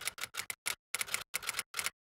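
Typewriter-style key clicks, a sound effect: a quick, even run of about eight sharp clicks a second that stops abruptly near the end.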